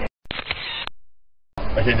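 Photo booth's camera shutter click as the picture is taken, one shot with a short fading tail that stops abruptly. The audio cuts out completely just before it and for about half a second after it.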